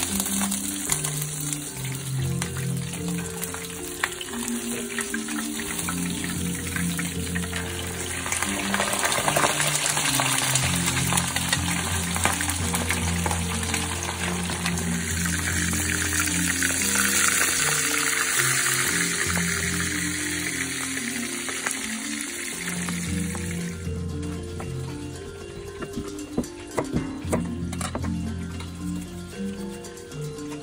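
A whole razor moonfish frying in hot oil, a steady sizzle that swells in the middle and cuts off suddenly about three quarters of the way through, with background music throughout. Near the end a few sharp knocks of a knife on a cutting board.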